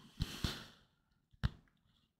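Faint handling sounds of a chrome trading card being flipped over in the hand: a short soft rustle, then a single click about a second and a half in.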